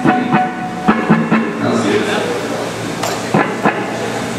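A band's instruments sounding loosely on stage between songs: a handful of scattered drum hits and short instrument notes, with people talking.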